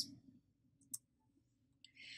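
Near silence with a single short, faint click about a second in.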